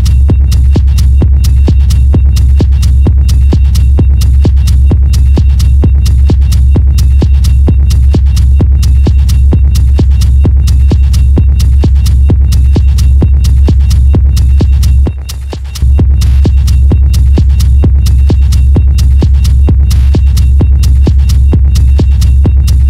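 Hard techno DJ mix: a steady, evenly spaced kick-drum beat over a heavy bass hum, with bright percussion on top. About two-thirds of the way through the bass and level drop out for about a second, then the beat comes straight back in.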